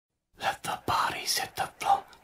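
A person whispering in short breathy syllables, starting a moment after the clip opens.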